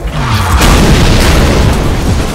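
A loud explosion sound effect that builds over the first half-second and keeps rumbling, with music underneath.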